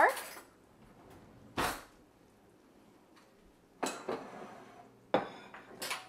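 A plate and a fork handled and set down on a kitchen countertop: a few separate clinks and clatters with quiet between, the loudest about five seconds in with a short ringing after it.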